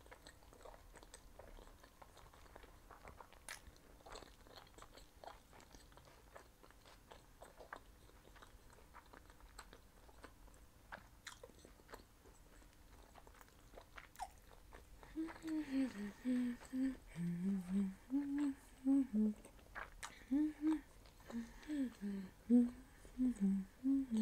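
Faint close-miked chewing of meatballs and bulgur pilaf, with soft wet mouth clicks. About fifteen seconds in, a woman starts humming short closed-mouth notes that rise and fall while she chews, louder than the chewing.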